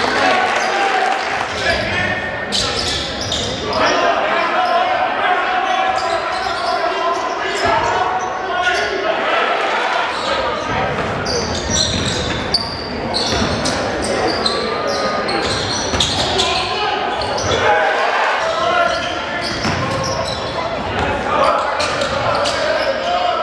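Live game sound of a basketball game in a gym: players' and crowd voices calling out over one another, and a basketball bouncing on the hardwood court in repeated knocks, all echoing in the large hall.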